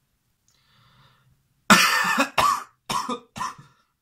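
A person coughing: a fit of four coughs that starts a little before halfway, the first the loudest and longest.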